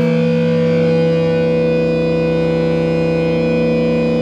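Loud distorted electric guitar holding a chord whose notes ring on steadily without dying away, a new note joining right at the start.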